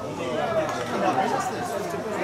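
Several voices at a football match talking and calling out over one another, a steady chatter with no single voice standing out.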